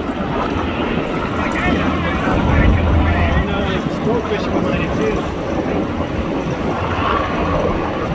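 Boat engines running on the water under a steady rumble of wind on the microphone, with indistinct voices in the background.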